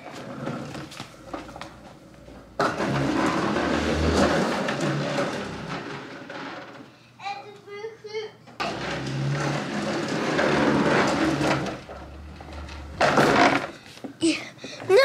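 Plastic wheels of a child's ride-on toy car rolling over the floor: a rumbling noise in two long runs of about four seconds each, with a short break between them.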